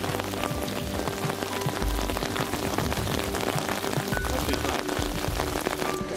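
Steady rain falling on the river and its surroundings: a dense, even hiss of countless small drops.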